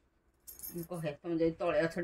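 A voice speaking in short broken phrases, just after a brief high jingle like keys about half a second in.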